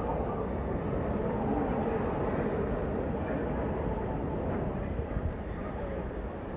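Background din of a large, busy exhibition hall: a steady low rumble with indistinct crowd chatter mixed in.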